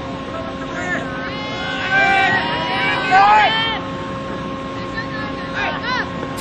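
Young baseball players shouting short, high-pitched calls and chatter from the field and bench, several calls a second or so apart, over a steady hum.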